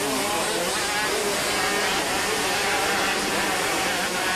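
A pack of motocross motorcycles racing through a turn, several engines revving up and down over one another.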